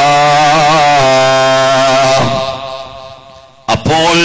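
A man's voice chanting a melodic line, wavering at first and then holding one long steady note. The note fades out over about a second and a half, and the voice comes back in sharply just before the end.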